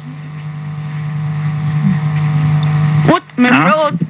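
A steady droning hum with many overtones, swelling slowly in loudness and cutting off suddenly about three seconds in, where a woman's voice takes over.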